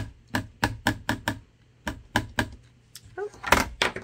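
Memento ink pad tapped repeatedly onto clear photopolymer stamps to ink them: a quick run of light plastic taps, about nine in two bursts with a short pause between.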